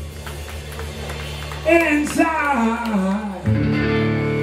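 A blues-rock band playing live: a voice sings a short gliding phrase over electric guitar and a steady bass line. A new sustained chord comes in about three and a half seconds in.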